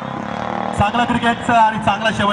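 A man talking over a public-address microphone, starting again after a brief pause near the start.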